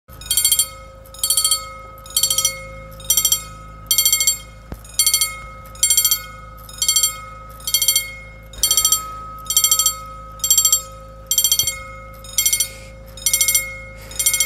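Old EFACEC mechanical level-crossing bell ringing, its hammer striking in a short rapid trill a little faster than once a second. It is the crossing's warning that it is active and a train is due.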